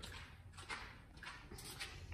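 Faint, uneven footsteps on a concrete shop floor over a low, steady hum.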